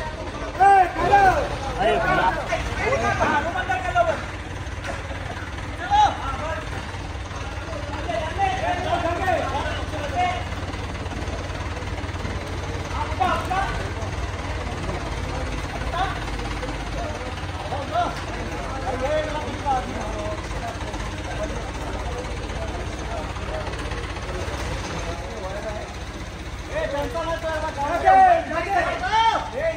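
A truck-mounted crane's engine running steadily with a low rumble while men in a crowd shout and call out to one another in bursts, loudest in the first few seconds.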